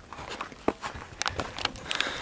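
Footsteps on a dirt path with rustling and knocking from a handheld camera, and a few irregular sharp clicks near the end.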